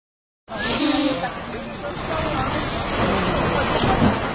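Onlookers' voices, not made out as words, over a continuous rushing noise at a bus fire. The sound starts suddenly about half a second in.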